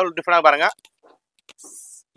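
A voice speaking briefly at the start. Near the end comes a short, soft, high rustle as the sequinned stone-work saree fabric is handled.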